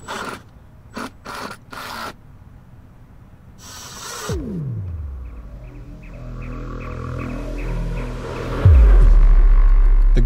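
A power screwdriver whirring in a few short bursts as it drives wood screws into the desk. It is followed by a music cue: a falling swoop, a slowly rising build, and a loud deep bass hit near the end that holds.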